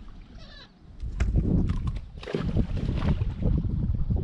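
Bowfin splashing and thrashing at the water's surface beside the boat as it is let go, with the broadest, loudest splash about two seconds in.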